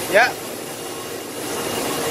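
Makino A88 horizontal machining centre running with a steady whirring hiss and a faint hum; the noise eases a little about half a second in and builds back up a second later.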